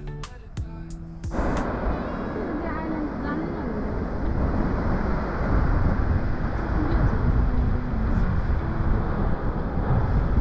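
Background music cut off about a second in, giving way to a loud, steady rushing rumble of wind buffeting the microphone.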